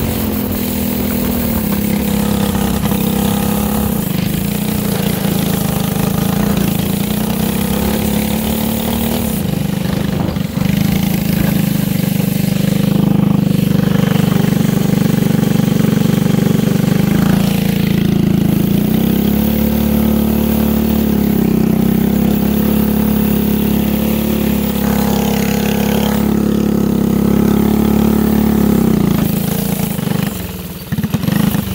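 Go-kart's small engine running as it is driven, its pitch steady for stretches, easing off and picking up again a few times, and falling away near the end.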